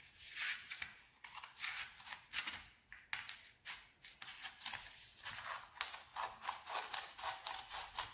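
Scissors cutting a sheet of paper in a long run of short snips, the snips coming quicker in the second half.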